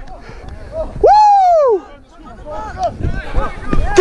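A man's loud drawn-out shout about a second in, its pitch rising and then falling, with fainter calls after it. Underneath is a low rumble of wind and movement on a body-worn camera as the wearer runs.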